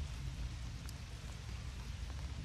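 Quiet outdoor background: a steady low hiss with scattered faint ticks and no distinct loud event.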